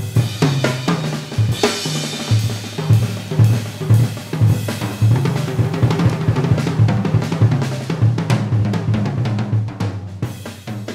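Jazz drum kit played busily, snare, bass drum and cymbals in dense strikes over low pitched notes, beginning to fade out near the end.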